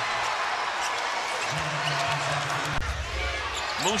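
Arena crowd noise during a live NBA basketball game, with a basketball bouncing on the hardwood court.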